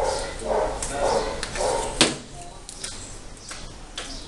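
A dog barking a few times in the first two seconds, and one sharp knock of a spatula against the mixing bowl about two seconds in.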